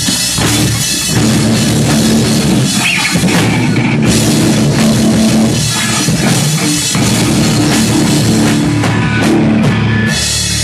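Live hardcore band playing: distorted electric guitars and a drum kit going loud and steady with no vocals.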